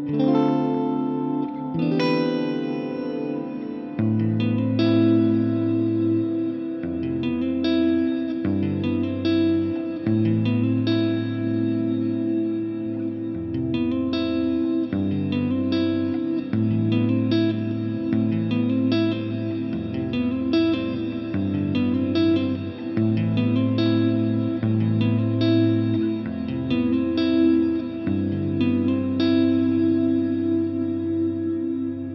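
Electric guitar played through the Fender Tone Master Pro's Nebula pitch-shifted reverb set an octave down. Picked notes come every second or so over a sustained low reverb wash that shifts with each chord.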